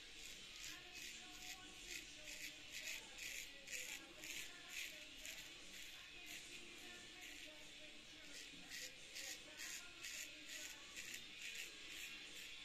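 Straight razor scraping through lathered stubble on the neck in short, quick strokes, two to three a second, with faint music underneath.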